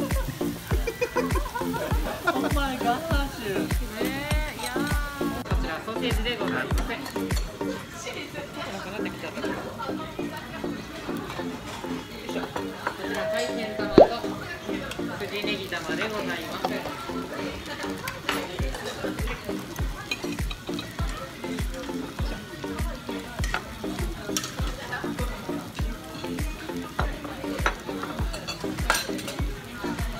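Chicken pieces sizzling on a hot teppan griddle, under background music with a steady beat. A single sharp clink comes about halfway through.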